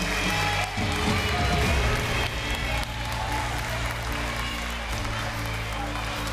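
Background music with a steady bass line, under applause and indistinct voices.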